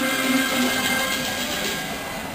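Teochew opera performed live: the accompanying ensemble holds steady sustained notes under voices on stage.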